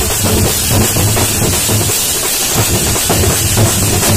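A street percussion troupe of large round drums beaten with wooden sticks, playing a loud rhythm of deep strokes, with a steady metallic shimmer above.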